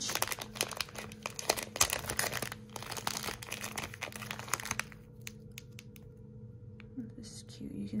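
Clear plastic zip-lock bag crinkling and rustling in the hands as it is opened. The crinkling is dense for about the first five seconds, then thins to a few faint clicks.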